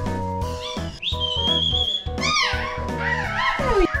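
A person whistles one long steady high note about a second in. A run of swooping, rising-and-falling whistled calls follows, ending in a falling glide just before the end. Background music with a steady beat plays throughout.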